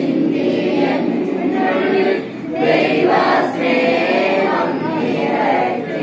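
A group of people singing a prayer hymn together, voices overlapping throughout.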